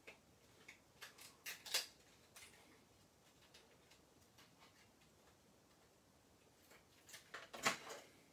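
Hands handling craft supplies on a desk: light clicks and taps about a second in, and a louder cluster of clicks near the end as a foil roll is picked up.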